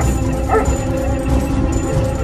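A dog barking, twice in quick succession near the start, over background music with a steady low drone.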